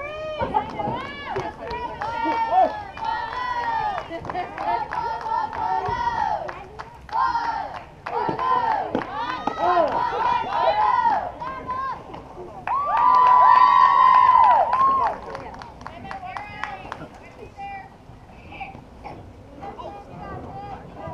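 Softball teammates chanting and cheering from the dugout, many high-pitched girls' voices overlapping. About two-thirds of the way through, one shout is held long and loud, and the voices then die down.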